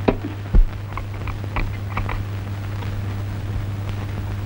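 A soft thump about half a second in, then a few light clicks and knocks as a vacuum flask is handled on a table set with glasses, over a steady low hum.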